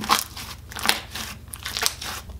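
Hands squeezing and kneading a large bowl of thick slime: three crackly squelches, about one a second.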